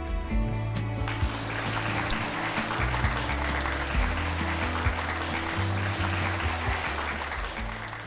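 Background music with a steady low bass line. Studio audience applause breaks out about a second in and carries on under it.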